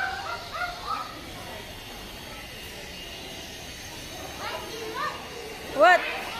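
Short, high-pitched vocal calls from a young child: a quick run of them at the start, then a lull of background murmur, then a few more rising calls near the end, the last one the loudest.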